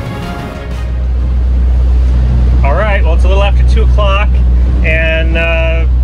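Background music fading out within the first second, giving way to the steady low drone of a motor boat's engines under way at cruising speed, heard at the helm. A person's voice comes in over the drone about halfway through.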